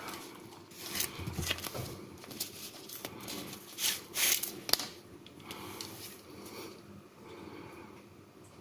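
Thin plastic sleeve crinkling and rustling in the hands as a pocket knife is slid out of its original wrapping, in irregular crackly bursts that die down near the end.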